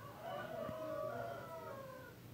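A single drawn-out pitched call in the background, lasting about a second and a half, rising slightly and then falling away.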